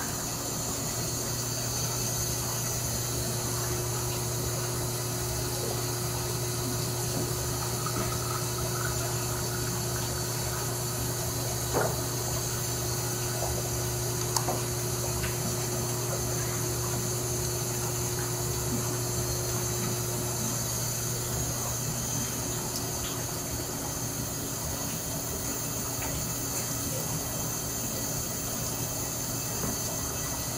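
Steady hum and hiss of a running distillation column and its pumps, with a watery, pump-like quality. Two light clicks near the middle as a small glass sample vial is handled at the column's sample port.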